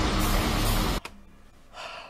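The closing bars of a hip-hop track with a heavy bass beat, cutting off suddenly about a second in. A faint breath follows near the end.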